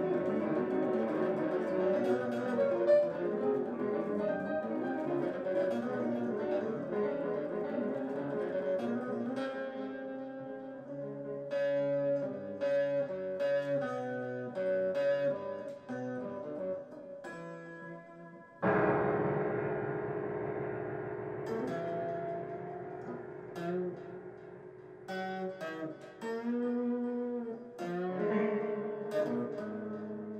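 Improvised contemporary-jazz duet of piano and electric guitar, busy and free-tempo, with a sudden loud chord about two-thirds of the way through that rings and fades.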